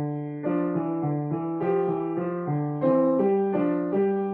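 Yamaha grand piano played with both hands in a five-finger technique exercise: an even run of notes, about three a second, stepping up and down through a short pattern and getting a little louder near the end.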